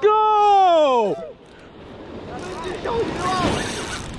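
A man's long excited shout of "go!", falling in pitch over about a second, from an angler who has just hooked a fish. After it comes a rising rush of surf and wind noise, with fainter shouts in it.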